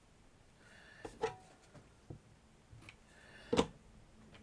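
A few light taps and clicks as small craft pieces and tools are handled and set down on a cutting mat, the loudest near the end.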